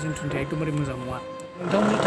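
A man speaking over background music with steady held tones; his voice gets louder near the end.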